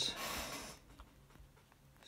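A short breath through the nose, fading out within the first second, then quiet with one faint click about a second in.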